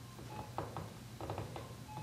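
A pause between speech: faint room hum with a few brief faint tones and soft clicks.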